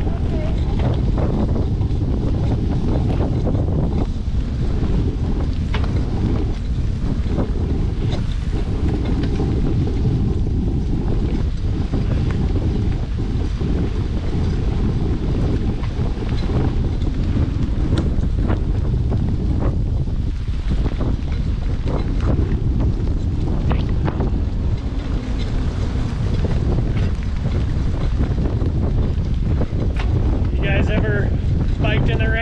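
Steady wind rumble on the microphone of a camera riding on a moving mountain bike, with many short, scattered clicks and crunches from the tyres on the wet dirt road and the rattling bike.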